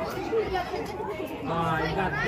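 Overlapping chatter of many people talking at once, with a nearer voice coming in about a second and a half in.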